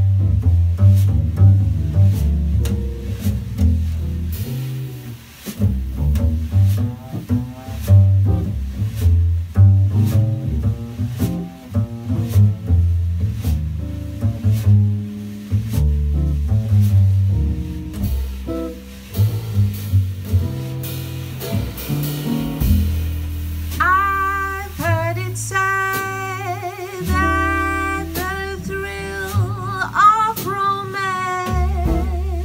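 Upright double bass taking a plucked jazz solo, with light acoustic guitar chords behind it. About three quarters of the way through, a woman's singing voice comes back in with held, wavering notes.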